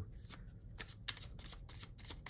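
A deck of tarot cards being shuffled by hand, a quick, irregular run of soft card clicks.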